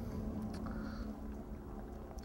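Low, steady background hum with a faint steady tone, and a few soft clicks.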